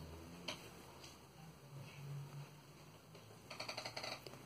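Faint handling sounds of yarn and a crochet hook: a single soft click about half a second in, then a quick run of small ticks near the end.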